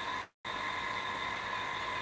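Steady room tone, an even hiss with a faint high whine, which cuts out to silence for a moment about a quarter second in.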